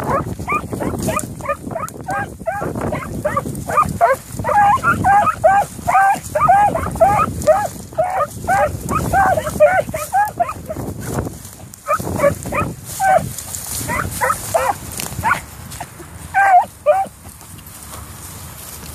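Beagles giving tongue while running a track: a quick string of short, high, ringing barks that thins out about two-thirds of the way through and stops near the end. Heavy wind buffets the microphone underneath.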